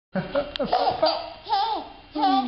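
A baby laughing in short, high-pitched squealing bursts, while a man makes playful 'pok' popping sounds with his mouth. One sharp pop comes about half a second in.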